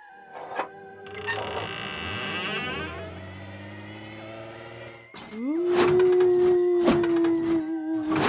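Spooky cartoon sound effects: an eerie, shimmering chord for a few seconds, then a few knocks and a long ghostly 'oooo' wail that swoops up and holds for about three seconds.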